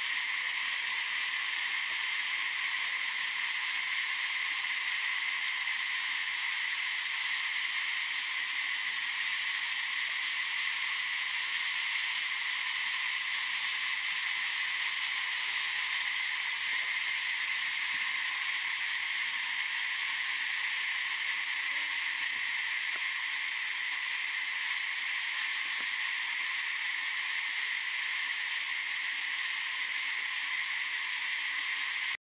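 A steady insect chorus: a constant high buzz at an even level, without pauses.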